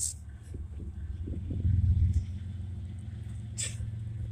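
Low vehicle rumble, swelling to its loudest about halfway through and then easing off, with a brief hiss near the end.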